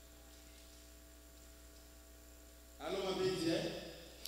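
Faint, steady electrical mains hum from a microphone sound system. A man's voice comes in about three seconds in.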